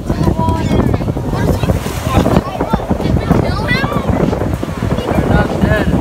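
Wind buffeting the phone's microphone in a steady low rumble over beach surf, with voices breaking in now and then.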